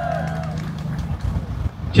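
Outdoor street background in a pause between speech: a steady low hum like vehicle traffic for about the first second, with faint voices behind it.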